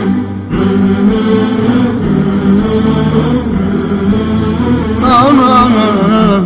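Closing music: a chanted vocal melody with long held notes, becoming a wavering, ornamented line about five seconds in.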